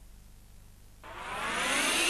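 A whooshing noise that sweeps upward in pitch and swells in loudness from about a second in, after a brief low lull with faint hum: a rising whoosh sound effect opening a TV commercial.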